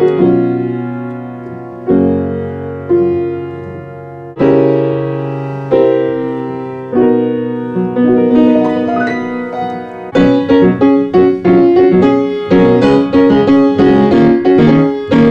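Yamaha P45 digital piano playing a newly made-up melody: slow, held chords over a sustained bass note at first, then from about eight seconds in a quicker line of short repeated notes that gets busier near ten seconds.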